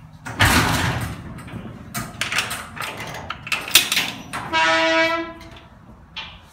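A loud scraping rattle, then a run of sharp knocks, then a steady horn-like tone lasting under a second near the end.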